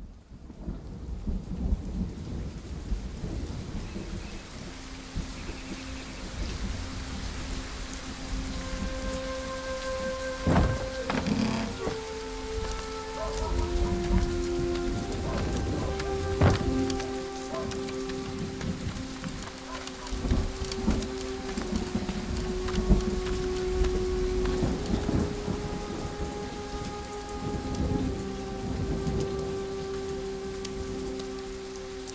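Steady rain with low rumbling thunder and a few sharp cracks, starting at once from silence. Soft held music notes come in about a third of the way through and continue under the rain.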